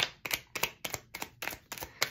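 A tarot deck being shuffled by hand: a quick run of sharp card clicks and slaps, about five a second.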